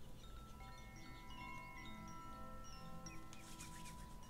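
Soft chimes ringing in the background sound bed: notes struck one after another and left to ring and overlap. A faint steady tone runs underneath.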